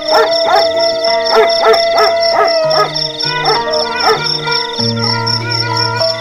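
A dog barking repeatedly, about three barks a second, that thins out after about four seconds, over eerie background music.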